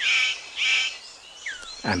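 Male superb bird of paradise calling to attract a female: a run of loud, high calls, about two a second, that stops about a second in. A couple of faint whistling glides follow, one falling and one rising.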